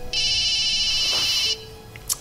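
A mobile phone ringing: one high-pitched electronic ring lasting about a second and a half, which cuts off suddenly. Soft background music sits beneath it.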